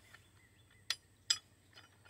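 Two sharp metal clinks about half a second apart, from steel tool parts knocking together as a bearing puller is fitted under a truck.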